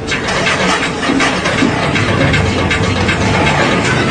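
Auto-rickshaw engine running loudly with an uneven clatter.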